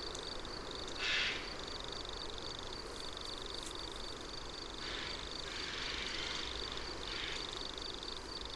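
Crickets chirping steadily as a faint outdoor ambience, a fast even pulsing in a high pitch, with a short burst of noise about a second in.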